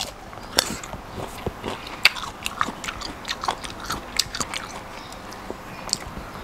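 Close-miked eating: a person biting into crunchy food and chewing it, heard as a run of irregular crisp crunches and mouth clicks.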